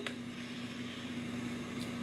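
Steady low hum under a faint even hiss: background room tone in a pause between spoken sentences.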